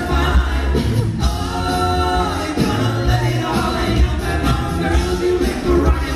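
Male a cappella group singing live in close harmony through a sound system, with a deep bass voice underneath.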